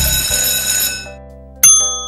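Quiz-timer sound effects over background music: a bright ringing tone as the countdown reaches zero fades out within the first second, then a single loud bell-like ding about a second and a half in signals the reveal of the answer.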